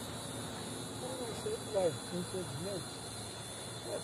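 A man's brief spoken remark over a steady background hiss with a faint high, even whine.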